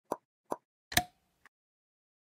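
Short pop sound effects on an animated end card, three in quick succession about half a second apart, the third the loudest with a brief ringing tone after it, then a faint fourth pop.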